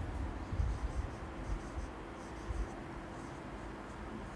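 Marker pen writing on a whiteboard: a few short spells of light scratchy strokes as figures and letters are written.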